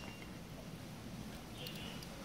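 Faint, quiet slicing of a utility-knife blade through the fleshy rootstock of a grafted cactus, over a low background hiss; no distinct cutting strokes stand out.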